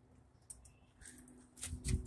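Faint handling sounds as darts are pulled out of a stucco wall, with a brief click about half a second in and a low rumble near the end.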